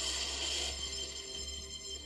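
Cartoon background music: a held, bright synthesizer chord with no speech, heard through a television speaker.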